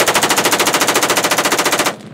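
M16 rifle firing one continuous fully automatic burst of about thirty rounds in under two seconds, roughly fifteen shots a second, stopping abruptly near the end as the magazine runs dry.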